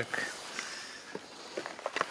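Handling and setting down a cardboard firecracker box on grass, with a few faint light clicks and rustles over a steady outdoor hiss.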